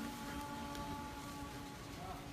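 Faint steady hum of a few held tones over background room noise, the higher tones fading out near the end.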